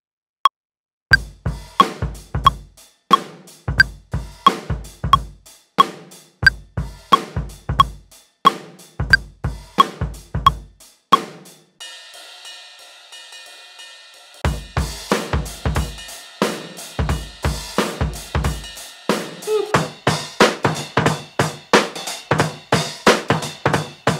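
Acoustic drum kit part played on a software drum plug-in: kick, snare, hi-hats and cymbals in a steady groove, with a count-in of metronome ticks at the start. About halfway through the drums drop out for two or three seconds, leaving held tones ringing, then come back busier.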